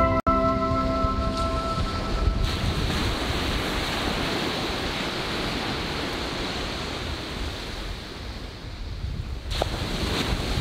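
Ocean surf washing onto a sandy beach, a steady rushing noise. The last notes of plucked-string music ring out and fade in the first two seconds.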